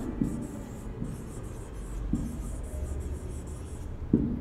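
Marker pen writing on a whiteboard: faint scratchy strokes with short breaks between them as cursive letters are drawn, and a light tap twice.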